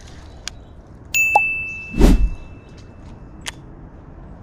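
A clear bell-like ding starts suddenly about a second in and rings on steadily for about two seconds. A short, loud rush of noise cuts across it about two seconds in.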